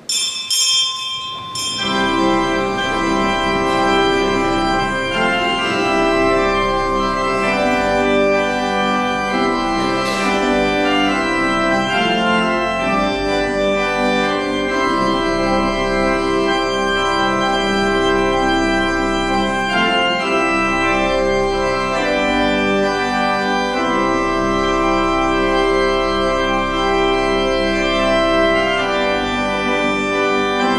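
Church organ playing sustained chords as entrance music while the procession comes in; it starts abruptly with a few high notes, then swells to full chords about two seconds in and holds loud and steady.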